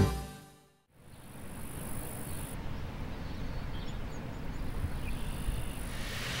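Acoustic guitar theme music fades out within the first second, followed by steady outdoor ambience: an even low rumble with a faint high hiss that drops out for about two seconds midway.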